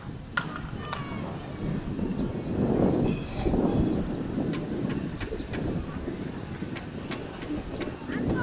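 Outdoor ambience: a low rumbling haze with faint indistinct voices that swells in the middle, a single sharp knock about half a second in, and faint bird chirps.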